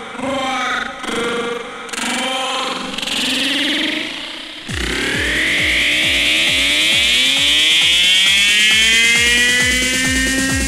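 Electronic dance music played from a vinyl record through a DJ mixer. It opens on a melodic phrase without a beat. About five seconds in, a steady kick drum comes in under a synth line that rises in pitch.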